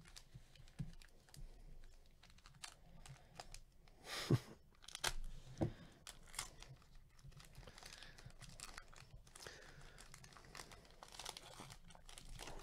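Foil trading-card pack being torn open and its wrapper crinkled by gloved hands: faint crackling with a few louder tears about four and five and a half seconds in.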